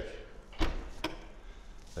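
BMW E61 M5 Touring's rear tailgate window being released and swung open: a sharp knock with a low thump, then a second click about half a second later.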